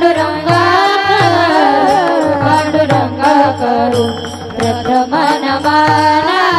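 Devotional kirtan singing of the names of Vitthala, a melodic voice over a hand drum beating in a steady rhythm. The voice drops away briefly a little after the midpoint, then comes back.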